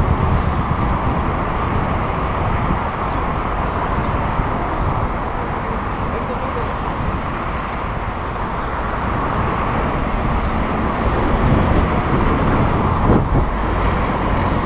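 Steady city road traffic, cars passing close by, heard from a bicycle riding in the traffic lane, with a low wind rumble on the microphone.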